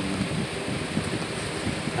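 Steady rushing background noise of a running fan.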